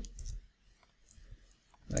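A few faint, scattered clicks of a computer keyboard as code is edited, with near silence between them.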